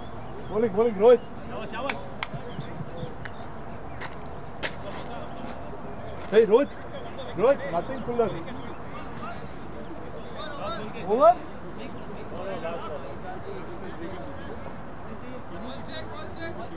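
Men's voices calling out across an outdoor cricket field, about four short shouts with rising pitch, over a steady outdoor background. A few sharp clicks come in the first few seconds.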